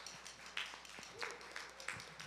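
Faint, scattered applause from a church congregation, with a few quiet voices in the room.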